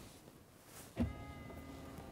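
Motorized touchscreen on a 2015 GMC Yukon's dashboard lifting up to uncover the hidden storage compartment behind it: a click about a second in, then a steady electric motor whine.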